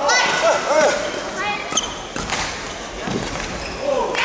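Badminton rally: short squeaks of court shoes on the hall floor in the first second, then a few sharp racket strikes on the shuttlecock about halfway through.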